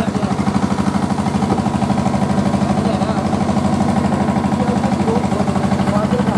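An engine running steadily close by: a low, even throb with a fast regular pulse, under faint voices.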